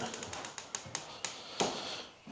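Interior door opened by its lever handle: a run of light clicks and taps from the handle and latch, with a sharper click about one and a half seconds in.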